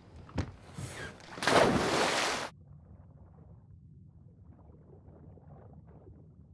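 A knock, then a loud splash into the sea lasting about a second that cuts off suddenly. It gives way to a faint, low, muffled underwater rumble with light crackling.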